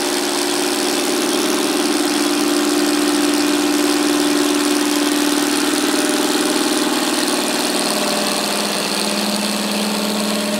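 CNC router spindle motor running at very low speed, turning a roll of aluminium foil against a rotary cutter blade: a steady hum that drops in pitch near the end. At this speed it does not run quite smoothly, which the owner says can be heard.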